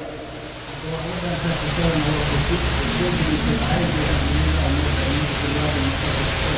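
Loud steady hiss, like an open microphone or line noise, swelling about a second in, with a faint man's voice wavering beneath it.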